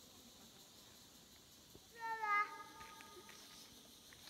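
A cat meowing once, a short slightly falling call about halfway through, over faint background hiss.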